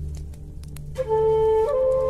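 Native American flute melody over a low steady drone: a flute note enters about a second in and steps up to a higher held note shortly after.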